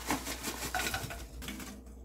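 Baking soda poured from a plastic pouch into stainless steel frying pans: the pouch crinkles and powder and lumps land on the steel as a dense run of small ticks, which thins out near the end.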